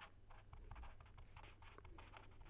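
Faint sound of a pen writing on paper, a run of short strokes as a word is written out.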